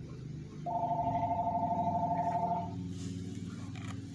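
A telephone ringing: one warbling two-tone electronic ring about two seconds long, starting just under a second in.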